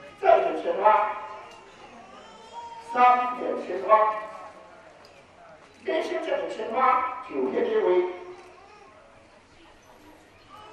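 A voice calling out three drawn-out phrases a few seconds apart, with quieter pauses between them.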